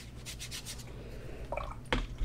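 Watercolour brush rubbing over wet Arches cold-press paper to soften a hard paint edge: a few light, quick scrubbing strokes, then a short click near the end.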